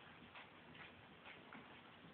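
Near silence: quiet room tone with a few faint, soft clicks.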